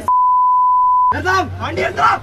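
A single steady, high-pitched beep lasting about a second, dropped over the speech and blotting it out: a censor bleep on a broadcast. Speech resumes right after it.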